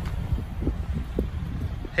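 Uneven low rumble of wind on the microphone, with a few faint soft knocks from handling.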